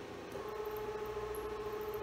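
Bridgeport Boss 8 X-axis DC servo motor, driven by a Geckodrive servo drive, starting to run about a third of a second in with a steady whine over a low hum as it jogs slowly.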